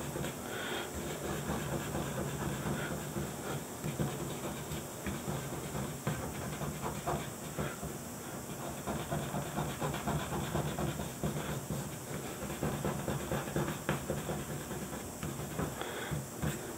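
Fingertip rubbing in quick short strokes on paper laid over inked plexiglass, a faint scratchy brushing, pressing ink through to the front of the sheet for shading.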